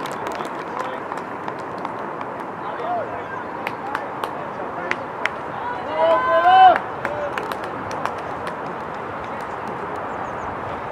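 Voices of players and onlookers calling out across an open football pitch, with scattered short sharp knocks and claps. A loud high-pitched shout rises about six seconds in, as an attacker runs at goal.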